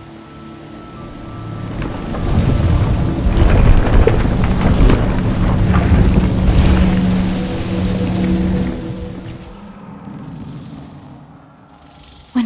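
Film sound effects of a wooden gazebo crumbling away: a deep rumble full of crackling that swells over the first few seconds, is loudest in the middle and fades near the end, under held notes of music.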